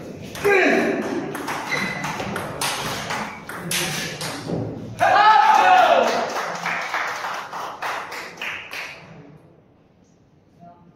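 Table tennis rally: the ball clicks sharply in quick succession off the bats and the table. About five seconds in comes a loud shout, rising then falling in pitch, followed by a few lighter ball knocks.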